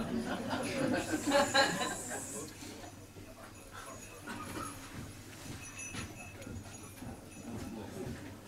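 Indistinct voices in a function room for the first two seconds or so, then a low murmur of room sound before the band starts.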